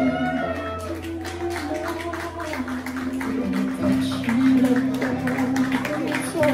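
Recorded music playing with sustained held notes over a steady bass line.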